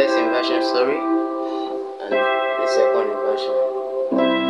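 Electronic keyboard playing held chords, with a new chord struck about two seconds in.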